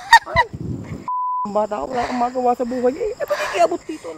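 A short, steady censor bleep about a second in, cutting into the audio. Before and after it come loud, wavering, honk-like vocal cries.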